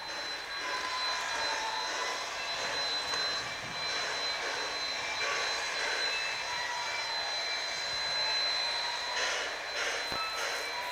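Steam locomotive standing in the yard with a steady hissing roar of steam, a few faint wavering tones in it and a thin steady high tone over it.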